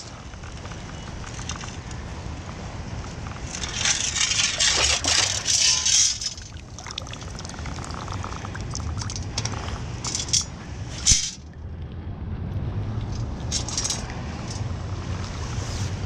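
Water pouring and sloshing out of a metal sand scoop as it is shaken and sifted in shallow water, in several rushes, with one sharp knock about two-thirds of the way through, over a steady low rumble of water and wind.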